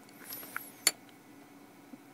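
Light handling rustle, then one sharp click a little under a second in, as a small handheld Sony voice recorder is moved and set down.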